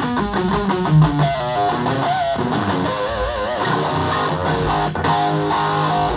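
Electric guitar played through an Orange Crush Micro amp into a Hartke 4x12 cabinet: single-note lead lines with wide, wavering vibrato and string bends over sustained low notes.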